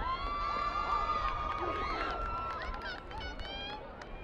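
Several high-pitched voices shouting and cheering, one long held call over about the first two seconds, tailing off toward the end, over a low rumble of wind on the microphone.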